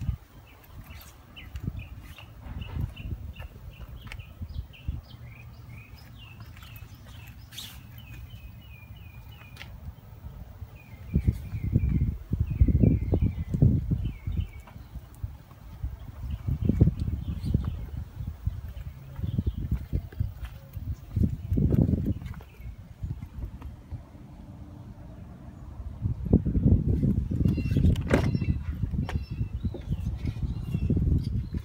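Birds chirping, a run of short high notes repeated through the first half. Irregular low rumbles from the microphone come and go, louder near the middle and end.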